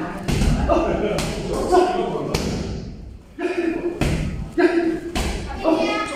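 Boxing-gloved punches and kicks landing on hand-held striking pads: several sharp slaps at uneven intervals, echoing in a large room.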